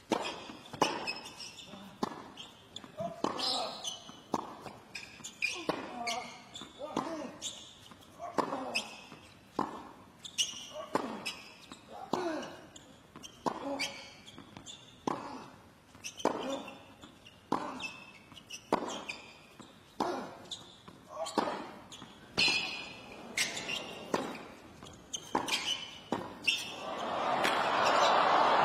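Tennis rally on a hard court: racket strings striking the ball about once a second, with ball bounces and players' grunts on many of the shots. Near the end the crowd noise swells as the point reaches its climax.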